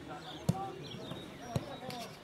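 A football kicked twice, two sharp thuds about a second apart, with distant shouts from players.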